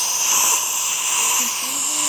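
Dental high-volume suction tip hissing steadily as it draws air and fluid from the patient's mouth, with a faint low hum near the end.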